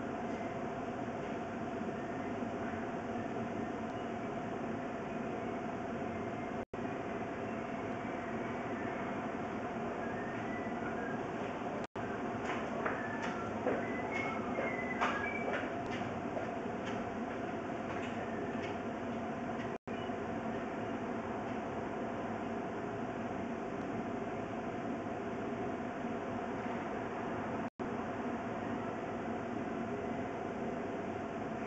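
Steady rushing noise with a constant hum, the sound cutting out completely for an instant four times. A few short, faint high tones come through near the middle.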